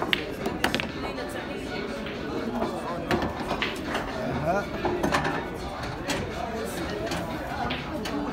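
Pool balls knocking on the table: the cue ball, just struck by the cue, rolls off and strikes with a sharp click about half a second in, followed by a few more scattered clicks later. Voices chatter throughout.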